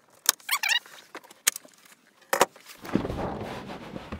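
Sharp clicks of bunk bed latch hardware and a brief squeak as the upper bunk is released, followed near the end by about a second of rustling, sliding noise as it is handled.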